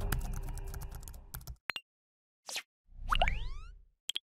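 Motion-graphics sound effects for an animated channel outro. The tail of the background track fades out over the first second and a half, followed by two quick clicks and a short whoosh. Just after three seconds comes a pop with several rising tones and a low thump that dies away.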